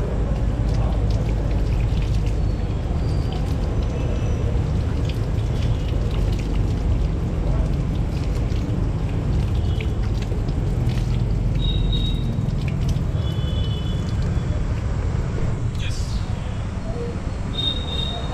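Water running from an outdoor tap over hands being rubbed and washed, splashing onto concrete, over a steady low background noise.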